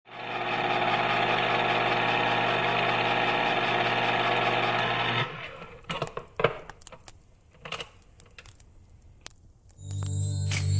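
Film projector running with a steady, rapid mechanical whir that stops abruptly about halfway through, followed by scattered clicks and crackles.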